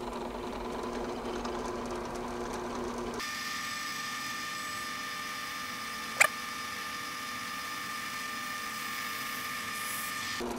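Drill press running with a Forstner bit boring into a silicone rubber mold plate: a steady motor whine whose tone shifts higher about three seconds in as the bit cuts, with one sharp click near the middle.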